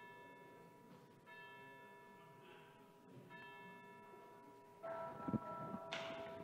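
A bell struck in slow strokes about two seconds apart, each ringing on and fading slowly. The last stroke, near the end, is louder and comes with a low thump.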